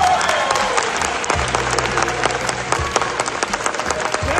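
A large audience applauding with dense, steady clapping and a few cheers after a speech. A low steady tone joins the clapping about a second and a half in.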